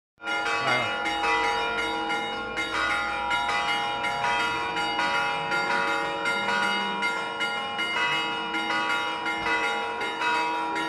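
Church bells pealing festively, rapid overlapping strokes about three a second with the tones ringing on between them.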